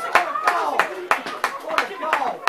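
Spectators clapping, about three claps a second, with voices shouting and cheering, celebrating a goal.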